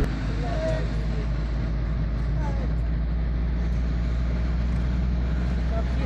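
Car engine and tyre noise heard from inside the cabin while driving, a steady low drone.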